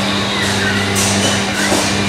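Background music with a dense, steady texture over a constant low drone.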